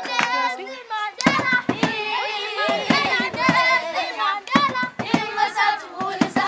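A group of children singing together, with sharp handclaps through the song.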